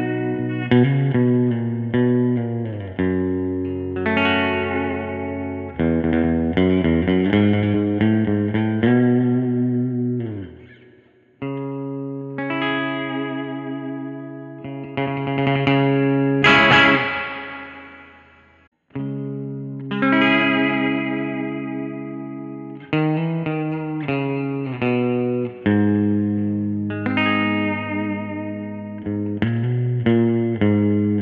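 1994 Made-in-Japan Fender Jazzmaster electric guitar with Pure Vintage pickups and an AVRI vibrato unit, played direct through a Twin Reverb amp simulation. Surf-style chords and single notes ring out in phrases, with a couple of short breaks. There is a wavering pitch from the vibrato arm about halfway through.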